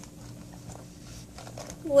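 Faint crinkling and rustling of a clear plastic toy bag being handled, over a steady low hum. Speech begins right at the end.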